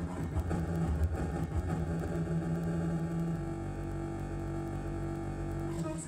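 Beatboxed low rumbling drone that sounds like an engine running, rough and pulsing at first. About halfway through it settles into a steadier hum with a higher held note on top, and it breaks off just before the end.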